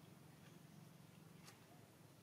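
Near silence: a faint steady low hum, with one faint click about one and a half seconds in.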